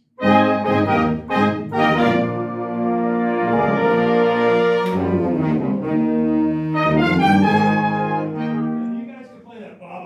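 A marching band's horn line of trumpets, mellophones and saxophones playing a series of held chords together. The chords change a few times and the sound dies away about nine seconds in.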